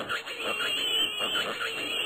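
Cartoon pig-women squealing and shrieking over one another. A high, wavering squeal is held from about half a second in.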